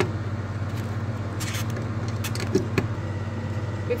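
Electrode lead plugs clicking into the output sockets of a TENS unit, a few short clicks about one and a half seconds in and again between two and three seconds in, over a steady low hum.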